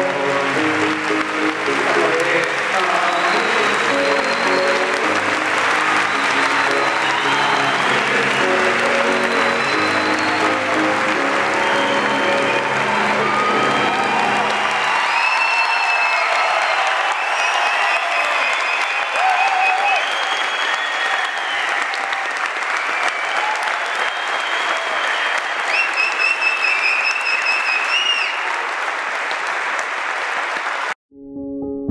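A large theatre audience applauding and cheering in a standing ovation, over piano chords for the first half. The piano stops about halfway through, and the applause carries on, with whistling from the crowd near the end.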